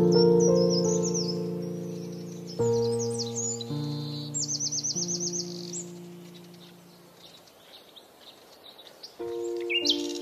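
Background music of soft sustained keyboard chords, each fading away, with bird chirps and quick trills mixed over it; the music dies down to near quiet in the second half before a new chord comes in near the end.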